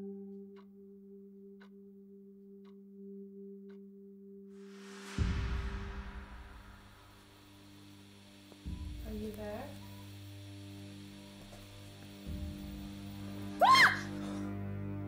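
Horror film score and sound design: a sustained ringing drone, then sudden deep booming hits about five, nine and twelve seconds in. Near the end comes a sharp, steeply rising pitched sound, the loudest moment.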